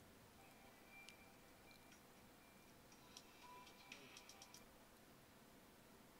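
Near silence, broken by faint clicks of a computer mouse: one about a second in, then a quick cluster between about three and four and a half seconds in.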